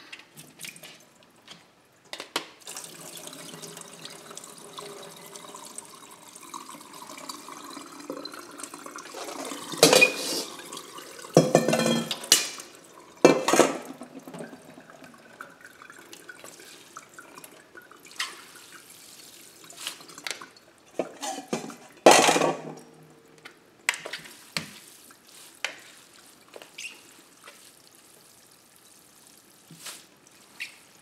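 Tap water running into a stainless steel sink while cooked rice vermicelli is rinsed and drained. Several loud knocks and clatters come from the metal tray and plastic colander being handled, the loudest about 10 and 22 seconds in, followed by smaller drips and clicks.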